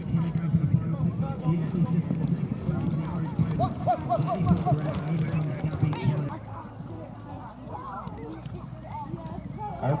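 Ponies galloping on a sand arena, their hoofbeats mixed with voices calling in the background. A steady low hum drops away about six seconds in.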